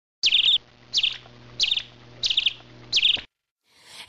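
A bird chirping five times at an even pace, about two-thirds of a second apart, each call a quick falling note followed by a short trill. The calls stop a little after three seconds in.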